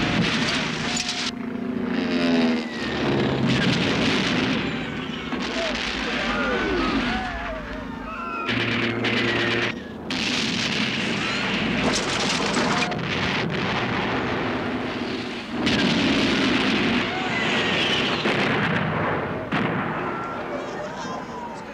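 Film battle sound: repeated explosions and gunfire, with people screaming and shouting as they flee.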